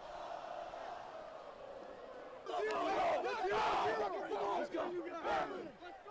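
A high school football team packed in a huddle, yelling together in a sudden loud burst of many voices about two and a half seconds in that lasts about three seconds. Before the shout there is a steady murmur of a crowd.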